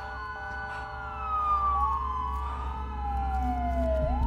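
Police sirens wailing: one slowly falls in pitch for about three seconds, then sweeps back up near the end, while a second rises briefly in the middle. Beneath them run several steady held tones and a low hum.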